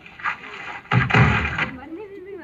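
A film's soundtrack playing over cinema speakers: a short burst, then a loud, heavy thud-like impact about a second in.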